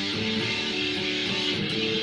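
Guitar music with notes held about half a second each, steady in loudness throughout.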